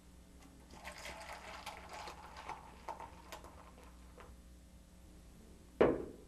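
Beer being poured into cups: a fizzing pour for about two seconds, followed by a few light clicks, with a brief louder sound right at the end.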